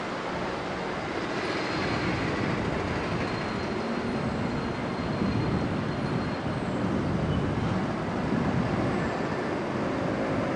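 A locomotive-hauled passenger train approaching in the distance: a steady rumble that slowly grows louder over a constant hiss.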